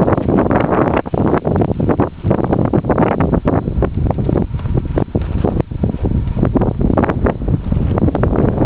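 Strong wind buffeting the camera's microphone: a loud, continuous rumble broken by rapid, irregular crackling gusts.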